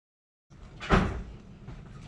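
Dead silence for the first half second, then a single sharp knock about a second in, followed by faint room noise.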